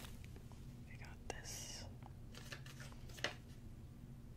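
Soft whispering about a second in, with faint paper handling and a couple of light taps close to the microphone.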